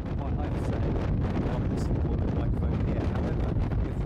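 Wind noise on an unshielded standard microphone in a wind tunnel blowing at about 15 metres per second: a steady, low, buffeting rush strong enough to make speech almost impossible to understand.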